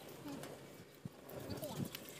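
Faint voices in the background, with a single light knock about a second in.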